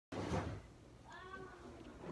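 A brief rustle of handling noise at the very start, then a faint, short high-pitched call with a bending pitch about a second in.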